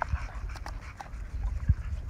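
Dogs playing tug-of-war over a stick, with scuffling on dirt and a few short, sharp clicks.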